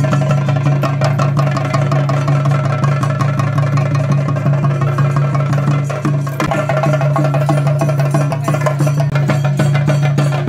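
Fast, loud Theyyam drumming on chenda drums: a dense run of rapid strokes over a steady low hum, briefly dipping about six seconds in.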